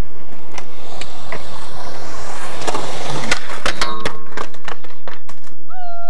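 Skateboard wheels rolling on concrete, the rolling noise building towards the middle, with several sharp clacks of the board on the ground. Near the end a steady pitched tone begins and holds.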